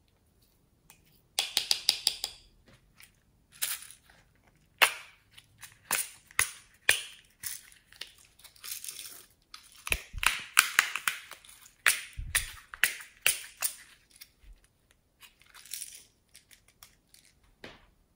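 Small plastic containers being handled, snapped open and emptied onto slime: a string of sharp clicks and short rattles. There is a quick run of them about two seconds in and a denser cluster about ten to thirteen seconds in.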